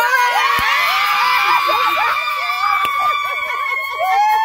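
A group of women cheering and shouting in celebration, with one long, high, shrill cry held throughout over the other voices.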